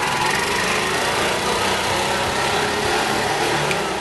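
Auto-rickshaw (keke) engine running steadily, a loud, even, hissy noise that holds level throughout.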